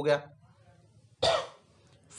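A man coughs once, a single short cough about a second into a pause in his speech.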